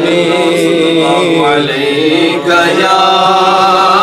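A man's voice singing a naat, drawing out long melismatic notes whose pitch wavers and glides, with no clear words.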